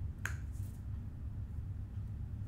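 A steady low hum of room tone, with a single sharp click about a quarter second in.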